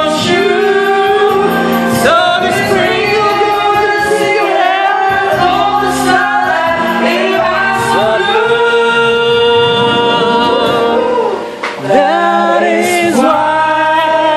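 A person singing into a handheld microphone over a karaoke backing track with a steady beat, the voice loud and amplified.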